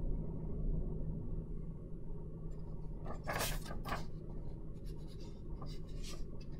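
Low steady hum with a short scratchy rustle of paper about three seconds in and a few lighter rustles near the end, as sheets are handled.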